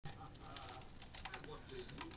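Budgerigars chattering softly, with many small quick clicks and scratches.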